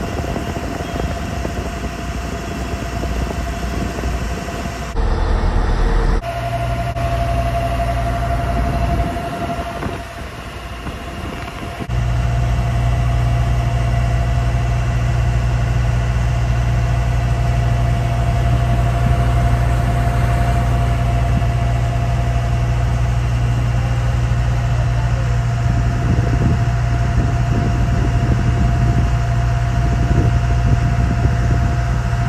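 Water taxi's engine running steadily as the boat crosses the lake: a low drone with a steady higher whine above it. The sound changes abruptly a few times in the first half, then holds louder and steady.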